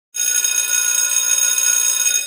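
A bright, bell-like ringing tone with many high overtones, starting just after the opening, held steady with a slight flutter, and beginning to fade right at the end.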